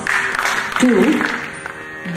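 Audience applause fading out within the first second, followed by a faint steady drone of held instrument tones.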